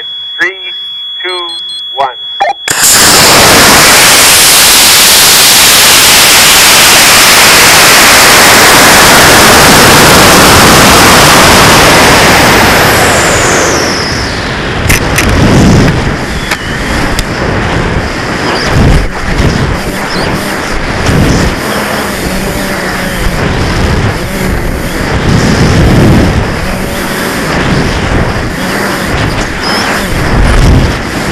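Onboard sound of a high-power rocket flight on a CTI J285 motor. About three seconds in the motor lights, and a loud, steady rush of motor and airflow noise follows for about ten seconds. It then fades with a falling whistle as the rocket slows toward apogee. About fifteen seconds in a sharp bang marks the ejection charge deploying the recovery system, followed by uneven wind buffeting with low thumps as the rocket descends.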